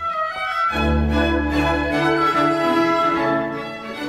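Chamber orchestra of strings, French horns and clarinets playing classical music: held chords, with a low bass note entering under a second in and sounding for about a second.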